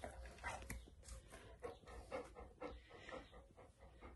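Golden retriever panting softly, quick short breaths at about three a second.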